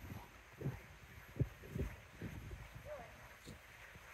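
A child's soft footsteps on wooden balancing logs: a handful of light, irregular thumps as he steps from log to log.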